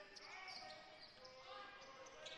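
Faint basketball court sound: a ball being dribbled on a hardwood floor, heard at a low level.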